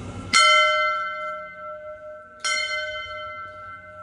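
A hanging temple bell struck twice, about two seconds apart, each strike ringing on with a clear metallic tone and slowly fading; the first strike is the louder.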